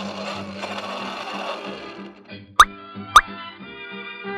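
Background music of held electronic tones, with two short, sharp electronic blips about half a second apart in the second half, like a retro computer sound effect.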